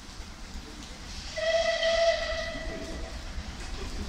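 Merchant Navy class steam locomotive 35028 Clan Line sounding its whistle: a single steady blast of about a second and a half, starting just over a second in, with steam hiss in it.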